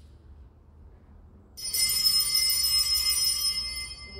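Brass altar bells (sanctus bells) rung by the altar server: a sudden peal of several small bells about one and a half seconds in, ringing on with many high overtones and fading away over about two and a half seconds.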